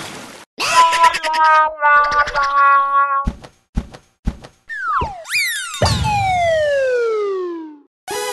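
Cartoon sound effects: a short hissing burst, then a run of stepped musical notes, a few sharp knocks, and finally a long falling whistle that fades out near the end.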